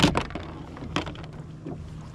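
A thump, then the rustle of a sweat-soaked T-shirt being peeled off over the head.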